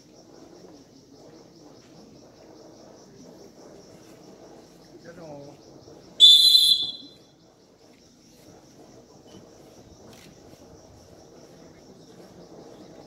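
A referee's whistle blown once, a sharp shrill blast of about a second just past the middle, over a low murmur of spectators.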